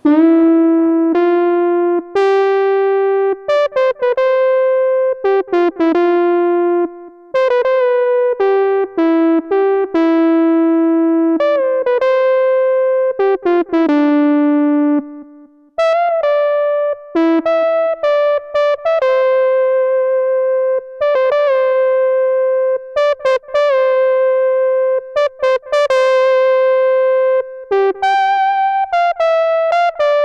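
Monophonic analog synthesizer made from a Moog MF-107 FreqBox oscillator gated by an MF-101 lowpass filter, playing a melody one note at a time. Each note starts bright and mellows as the filter closes, and some notes bend slightly into pitch.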